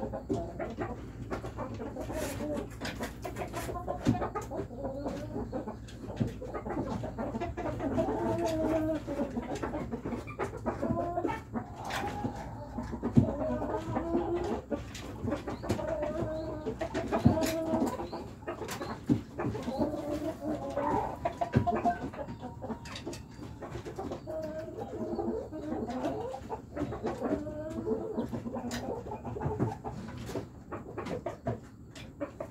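Chickens clucking, with many short calls following one another and some scattered clicks.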